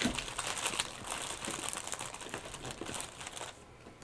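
Crinkly rustling with many small crackles as something is handled at close range, dying away a little before the end.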